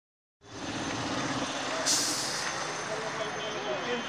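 Steady outdoor street noise with a short, sharp hiss about two seconds in, and faint voices in the background.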